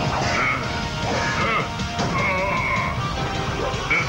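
Action music under the clashes and crashes of a giant-robot sword fight.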